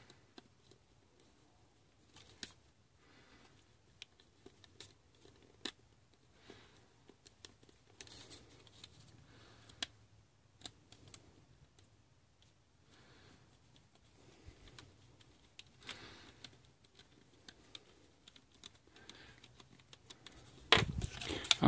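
Faint, scattered small clicks and scrapes of a precision screwdriver turning tiny screws into the back flange of a laptop hard-drive caddy, with brief handling rustles.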